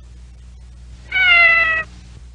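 The MTM logo's kitten meowing once, a single call a little under a second long that falls slightly in pitch, about a second in, over a faint steady low hum.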